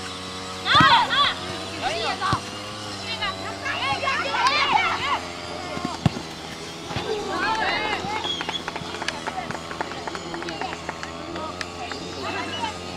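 Children's voices shouting and calling across a football pitch during play, high calls that rise and fall, with a few sharp thuds of the ball being kicked, the clearest about six seconds in.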